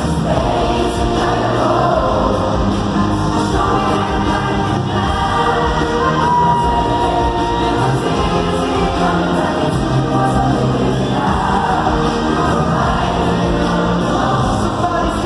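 Live pop concert music in an arena, recorded from within the audience: band playing steadily under sung vocals, with many voices singing together.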